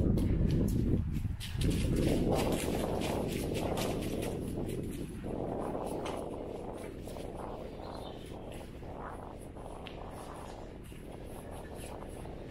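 Footsteps crunching on the gravel and leaf-litter floor of a brick underpass, a quick run of small clicks over a low rumble of wind on the microphone, fading gradually.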